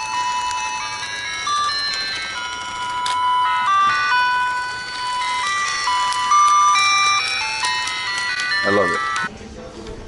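Simple electronic melody of beeping notes from a battery-powered musical novelty, cutting off abruptly near the end.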